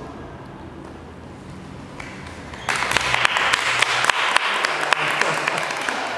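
Group applause, many hands clapping, that starts suddenly a little before halfway through after a few seconds of quiet room sound.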